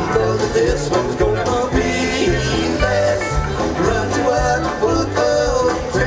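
Live country-rock band playing: electric guitars over bass guitar and drums, with a steady beat.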